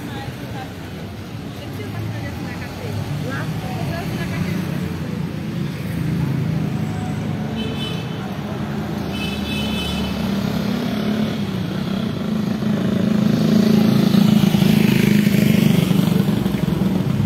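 Street traffic: a motor vehicle's engine running and drawing closer, getting louder over the last few seconds.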